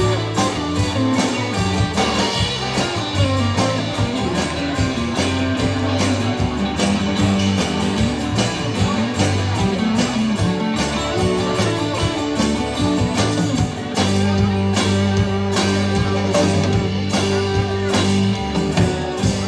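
Live rock band playing an instrumental passage: electric guitars and electric bass over drums, with an acoustic guitar. About fourteen seconds in the band moves into a fuller section with a sustained bass note.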